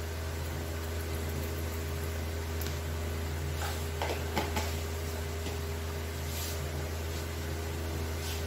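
Cumin seeds sizzling in hot mustard oil in a kadai, a soft even frying hiss with a few faint crackles around the middle, over a steady low hum.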